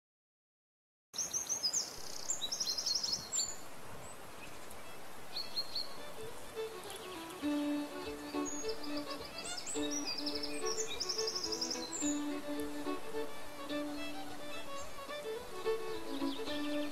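Birds chirping and trilling, starting suddenly about a second in; from about six seconds in a slow melody of long held notes plays along with them.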